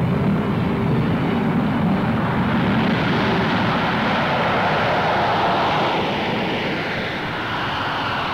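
Jet engines of a B-52 bomber in flight, a steady, continuous rushing noise. A deep rumble gives way to a higher hiss about three seconds in, and it eases slightly near the end.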